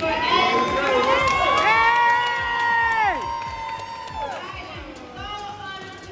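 Young audience cheering. Several voices hold long high-pitched shouts over the crowd noise, then drop off about three seconds in, and the cheering fades.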